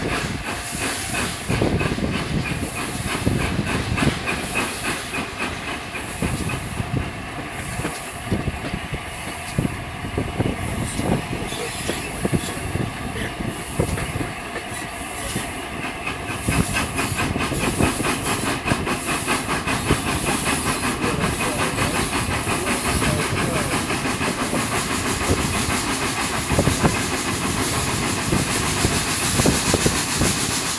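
LNER A4 Pacific steam locomotive 60009 'Union of South Africa' running under way, with steady rhythmic exhaust beats over a continuous hiss of steam and the rattle of the train on the rails.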